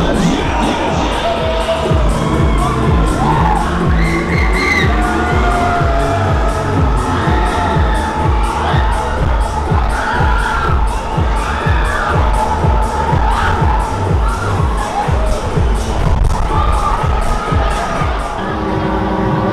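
A fairground ride's loud dance music with a steady beat, with riders screaming and cheering over it.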